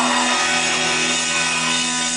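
Live rock band on a loud festival PA holding a sustained distorted guitar chord, ringing steadily under crowd noise.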